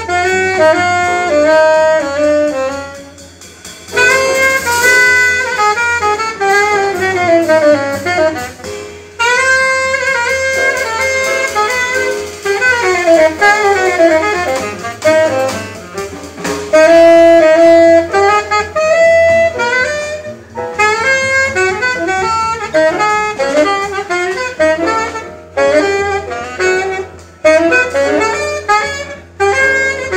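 Tenor saxophone soloing in a live jazz quintet: fast, flowing runs broken by short gaps between phrases, with a held note about two-thirds of the way through.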